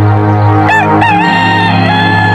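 A rooster crowing once: a short rising note just under a second in, then a long held note that carries on past the end. Steady sustained music plays underneath.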